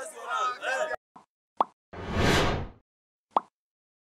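Animated end-card sound effects: a faint blip and a short pop, a swish lasting under a second about two seconds in, then a single click near the end.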